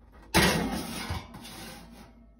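Metal roasting pan and wire oven rack scraping and sliding against each other, starting suddenly about a third of a second in and trailing off, with a second small knock about a second in.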